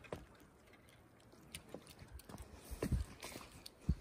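Faint, scattered clicks and knocks of handling as a hooked brook trout is brought in from a small stream, with a couple of louder low thumps about three seconds in and near the end.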